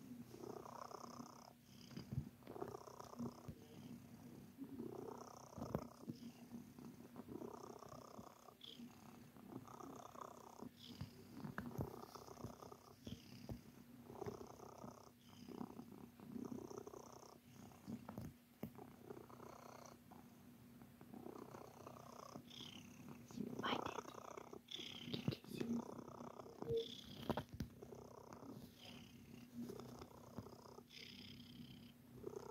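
Flamepoint Siamese cat purring, the purr swelling and fading with each breath about every two seconds.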